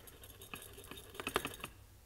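A quick run of light clicks and taps, bunched in the middle of the clip, from fingers handling the Apple Watch's glass and aluminium case.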